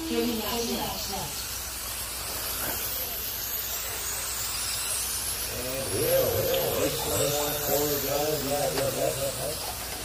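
Radio-controlled late model race cars running laps on a dirt oval, their motors making a high whine that rises and falls as they pass. Voices talk over it from about halfway through.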